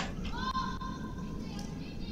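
A curler's single long, high-pitched call on the ice, held for about a second, heard faintly through the venue microphones while a stone is delivered.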